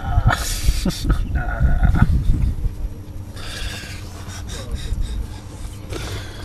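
A young dog growling playfully as a hand plays with it, with a short whine about a second and a half in; the sounds die down in the second half.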